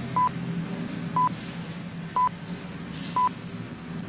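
Four short, identical beeps, one a second, from the French speaking clock's time pips relayed over the broadcast to count off the seconds before the mine blast, over a steady low hum.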